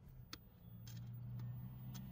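A few faint, scattered ticks as a hand screwdriver turns a small screw into a metal tube joint of a garden trellis, over a faint steady low hum.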